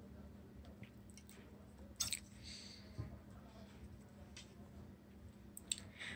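Scissors and cloth being handled on a tabletop: a few faint clicks, the sharpest about two seconds in, and a soft fabric rustle just after it.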